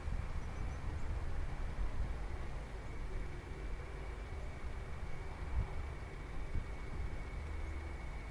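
Wind buffeting the camera microphone outdoors, an uneven low rumble, with a faint steady high-pitched tone running through it.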